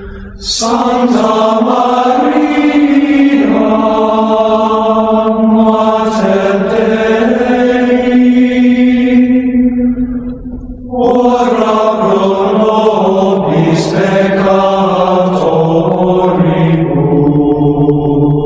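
Gregorian chant: sung voices holding long, slowly moving notes in two phrases, with a short pause for breath about ten and a half seconds in.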